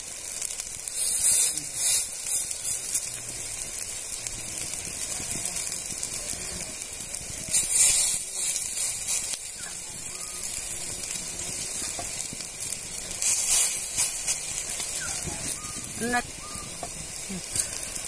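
Pumpkin-flower fritters frying in hot oil in an iron kadai: a steady sizzle that flares louder three times as fresh spoonfuls of batter go into the oil.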